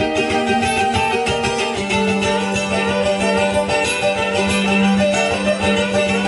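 Acoustic trio playing an instrumental passage: strummed acoustic guitar and mandolin with fiddle. A long held low note comes in about two seconds in.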